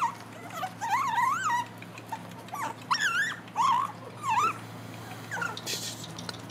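Young puppy whining in a series of high, wavering cries, about five over several seconds.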